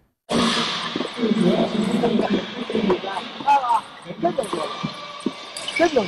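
A loud din of overlapping voices and noise filling a table tennis training hall, played deliberately as distraction for anti-interference training, with occasional sharp clicks of ping-pong balls being hit. It cuts in suddenly after a moment of silence.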